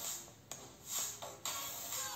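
Music played at full volume through Blitzwolf BW-HP0 over-ear headphones, heard faintly from outside the ear cups, with bright cymbal-like highs and a couple of sharp beats.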